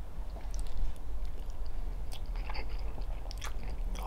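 A person chewing a mouthful of mashed potato, gravy and sausage: soft wet mouth sounds with a few short clicks scattered through.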